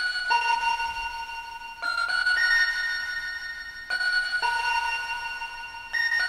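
Accent bell melody from a software mallet-and-bell instrument layered with a celesta, played back as a sample layer. A few high bell notes are struck and left to ring and fade, with a short phrase about every two seconds.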